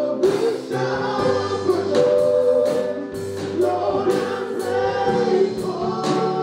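Gospel praise-and-worship song: a group of voices singing together over sustained instrumental accompaniment, with a steady beat of about two strokes a second.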